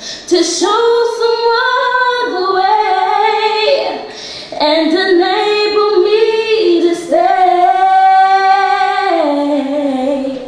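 Two women singing a worship song, holding long sung notes in two phrases with a short break about four seconds in.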